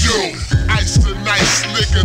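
Slowed-down hip hop track: a pitched-down rap vocal over a deep, pulsing bass line and beat.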